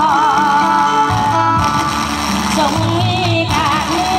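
A woman singing into a handheld microphone, holding long, wavering notes with vibrato over instrumental accompaniment with steady low notes.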